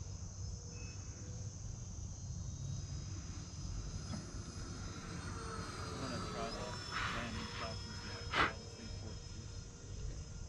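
Crickets and other insects chirring steadily, under the faint whine of a distant 64mm electric ducted-fan model jet whose pitch slides up and down in the middle. A single sharp click about eight seconds in is the loudest sound.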